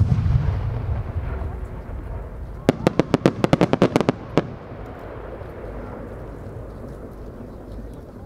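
A No. 8 senrin-dama firework shell breaks with a loud bang and a low rumbling echo. Nearly three seconds later its many small sub-shells go off in a rapid string of about a dozen sharp cracks over about a second and a half.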